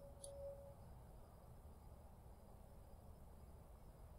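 Near silence: faint room tone, with a brief faint tone in the first second.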